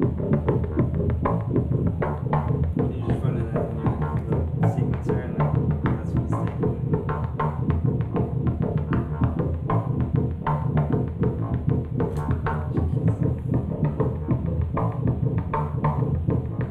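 Make Noise Eurorack modular synthesizer playing a patch sequenced from its René module: a fast, busy run of short clicky percussive notes over a steady low pulse.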